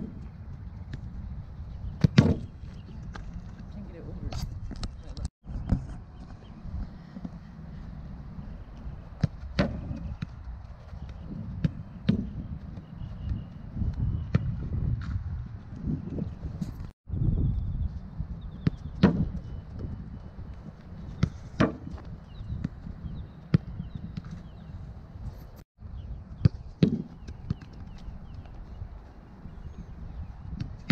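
A football being kicked and knocking against wooden rebound boards, in single irregular knocks every second or two, over a steady low rumble of wind on the microphone.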